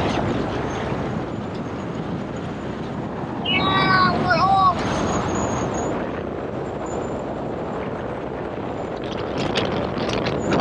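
Wind rushing over a camera outside the window of a moving pickup truck towing a boat, over steady road and tyre noise. About four seconds in, a man lets out a brief whooping shout.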